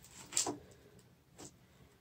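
Two faint short clicks, about a second apart, from small items being handled on a tabletop.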